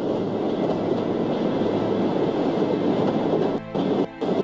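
A subway train rumbling through the station, loud and steady. Near the end the rumble breaks up into a rapid stutter.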